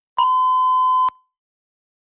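Countdown timer's end beep: one long, steady electronic tone lasting about a second, signalling that the speaking time has run out.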